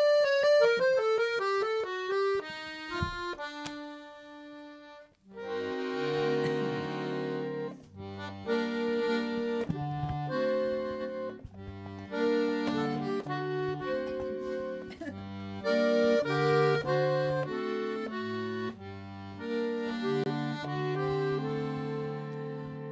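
Weltmeister piano accordion playing alone. It opens with a falling run of single notes over the first few seconds, breaks off briefly about five seconds in, then plays a melody over steady bass-button and chord accompaniment.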